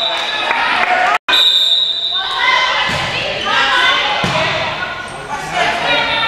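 Players' and spectators' voices calling and shouting in a gym during a volleyball game, echoing in the hall, with a few ball hits. The sound cuts out completely for a moment about a second in.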